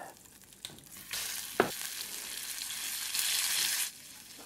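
Pieces of cruchade (set cornmeal porridge) frying in hot oil in a frying pan: a steady sizzle that starts about a second in and grows louder near the end, with one sharp knock early in it.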